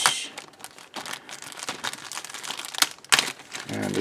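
Thin clear plastic bag around a model-kit sprue crinkling as it is handled and pulled open, with a sharp crackle at the start and two more about three seconds in.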